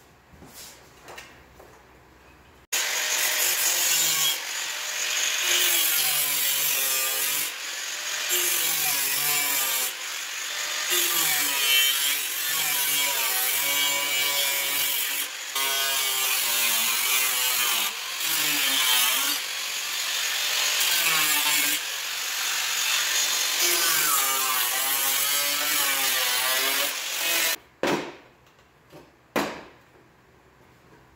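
Corded angle grinder with a four-inch cutoff wheel starting suddenly about three seconds in and cutting through a steel car panel, its whine wavering up and down in pitch as it works. It shuts off near the end, followed by a few clicks.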